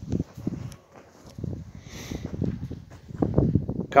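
Footsteps walking over soft, tilled garden soil: a string of dull, uneven thuds.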